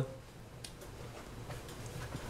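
Quiet room tone with a low hum and a few faint, irregular ticks.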